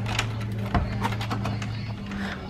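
A key being turned in the lock of a wooden door while the handle is worked: a run of small clicks and rattles, with one louder clunk about three-quarters of a second in. A steady low hum sits underneath.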